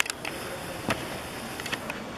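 Indoor sports-hall ambience with indistinct background voices, broken by a few sharp knocks, the clearest about a second in.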